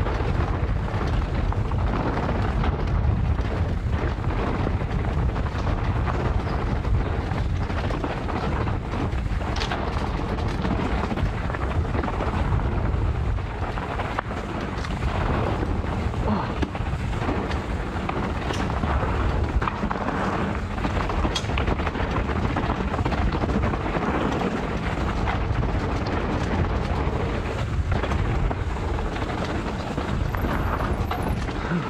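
Mountain bike tyres rolling fast over a dirt and gravel trail under a steady rumble of wind on the microphone, with frequent small clicks and knocks as the bike rattles over bumps and stones.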